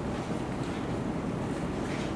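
Steady low rumble of background noise, with no distinct sound standing out.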